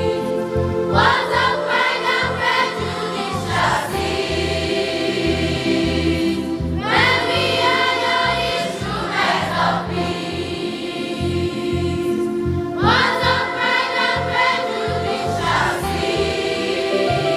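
Children's choir singing a hymn in long held notes, accompanied by electronic keyboards.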